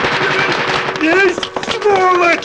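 Rapid gunfire as a dense crackle for about the first second, then short rising-and-falling cries of voices.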